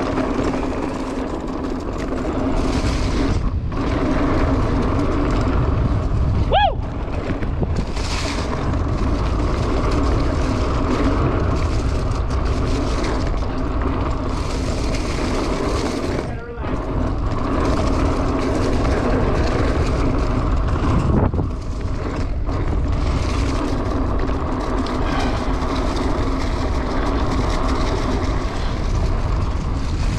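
Mountain bike rolling fast down a dirt singletrack: steady tyre and drivetrain noise with heavy wind on the microphone, plus a brief high squeal about six and a half seconds in.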